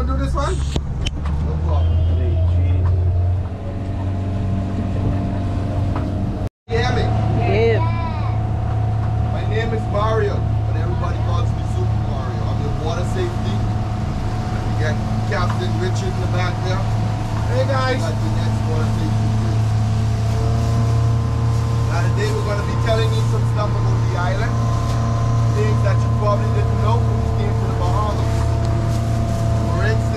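Tour boat's engine running steadily underway, a constant low drone with a steady hum above it.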